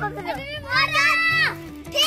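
Children's high-pitched voices calling out, with two long, drawn-out calls. Background music with a repeating bass line runs underneath.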